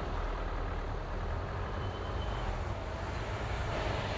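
Car driving at low speed: a steady low rumble of engine and tyre noise.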